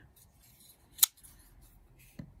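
A single sharp click about a second in as a Spyderco Para 3 folding knife is handled and brought onto a cutting mat, with faint handling rustle around it.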